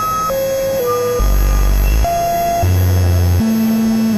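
Experimental electronic music: a string of steady synthesizer tones that jump between high and low pitches about every half second, over a dense layered drone.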